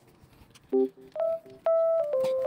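Background music coming in after a near-silent moment: a few short, separate notes, then a held note about a second and a half in that leads into sustained chords.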